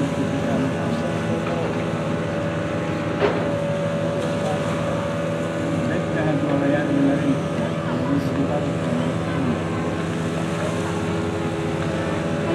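Rescue boat's engine and fire pump running with a steady drone, mixed with the rush of a water jet sprayed from its hose. A single sharp knock sounds about three seconds in.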